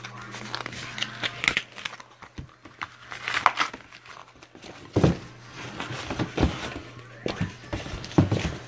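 Cardboard box and the small card boxes inside it being rummaged through and lifted out: irregular rustling, crinkling and light knocks of cardboard and paper.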